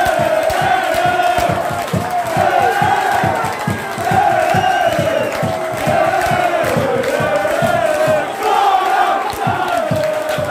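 A football crowd chanting and singing together in celebration of a home goal, many voices in a wavering unison, over a quick run of low thumps.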